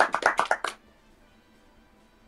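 A quick run of hand claps, about seven a second, stopping a little under a second in.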